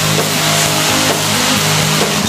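Stage CO2 cryo jets blasting with a loud, steady hiss over a rock band holding a sustained chord.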